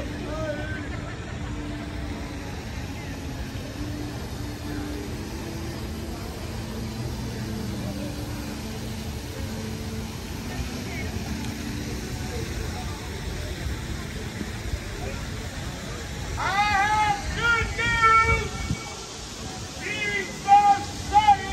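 Outdoor city ambience: a steady low rumble of traffic and wind, with faint distant voices. Near the end comes a short run of high-pitched calls or voices, the loudest sounds here.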